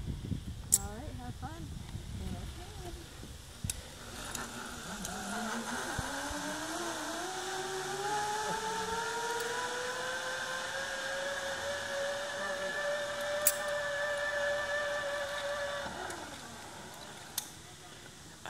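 Zipline trolley pulleys whining along the steel cable as a rider goes down the line: a tone that rises in pitch for several seconds as she picks up speed, then holds steady and fades out near the end. Voices and a sharp click come before the whine.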